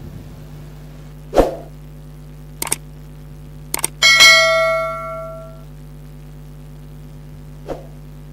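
Subscribe-and-bell end-screen sound effects: a soft knock, two pairs of mouse clicks, then a bright bell ding that rings out for about a second and a half, over a steady low hum.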